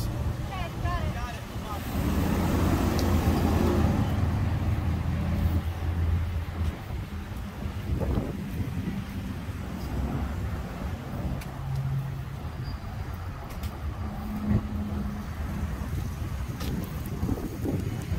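Ford Explorer SUV engine running close by as the vehicle moves slowly, its low hum loudest a couple of seconds in, with road traffic noise beneath.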